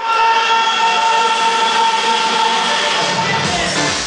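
Loud electronic dance music from a club sound system: a synth chord held for about three seconds in a breakdown, then the bass and beat come back in near the end.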